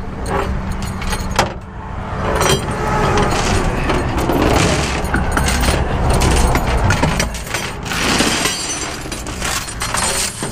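Steel tow chains and hooks clinking and rattling against the steel diamond-plate deck of a rollback tow truck bed as they are handled, over the steady low rumble of the truck's engine running.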